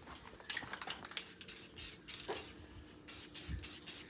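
Aerosol spray-paint can hissing in a quick series of short bursts as a plastic car interior trim piece is given a coat of paint.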